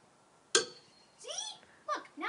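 A tossed toy ring landing with a single sharp knock about half a second in, followed by short wordless voice sounds.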